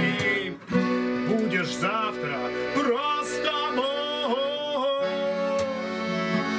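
A man sings in Russian to his own acoustic guitar. About five seconds in, the sung line gives way to steady held notes.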